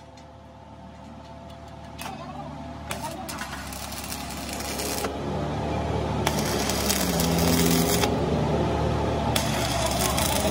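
Stick (arc) welding on the seam of a broken truck drive shaft: the arc is struck and crackles and sputters in bursts that grow louder, with a few sharp clicks, over a steady machine hum.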